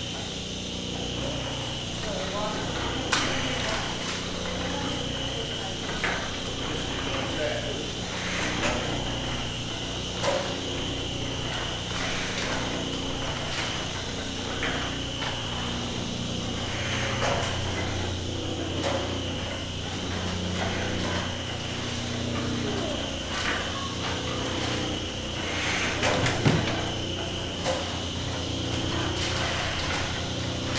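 Large belt-driven flatbed cylinder printing press running: a steady mechanical drone with a sharp knock every couple of seconds.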